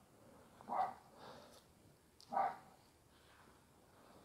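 A dog giving two short, faint barks, about a second and a half apart.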